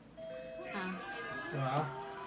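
Small electronic melody of held tinny notes playing, the kind of tune a musical toy or novelty birthday gadget plays, with soft voices over it.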